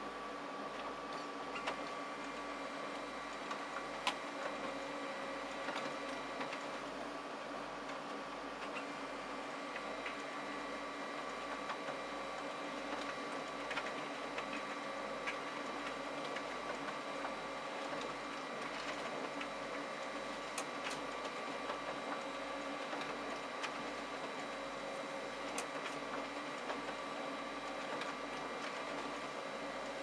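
Konica Minolta magicolor colour laser multifunction printer running a double-sided print job: a steady mechanical hum with several held whining tones and occasional light clicks as the sheets are duplexed inside the machine. The first printed sheet feeds out near the end.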